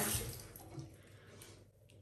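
Water running briefly at a bathroom sink, loudest at first and trailing off about a second and a half in.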